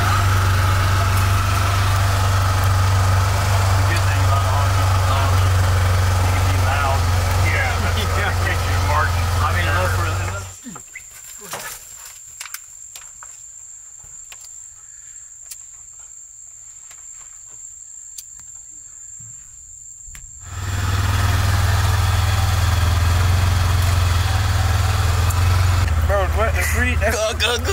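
Steady low drone of a vehicle's running engine heard from inside the cab. It cuts out for about ten seconds in the middle, leaving only a faint high whine and a few light clicks, then comes back at full level.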